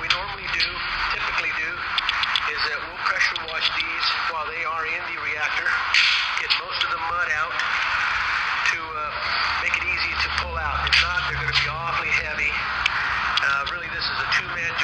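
A man's voice talking through most of the stretch, sounding as if played back through a speaker, with a low hum that comes in about ten seconds in and fades about two and a half seconds later.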